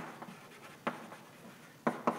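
Chalk writing on a blackboard: a handful of sharp chalk taps and short scrapes as letters are written.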